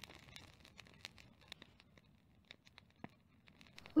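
A quiet pause: faint room tone with a handful of small, scattered clicks.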